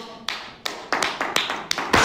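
A few people clapping their hands, with scattered, irregular claps rather than steady applause.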